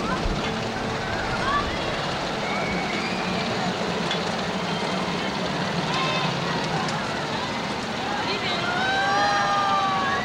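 Crowd noise: many overlapping voices over a steady din. Near the end come a few longer, drawn-out raised voices.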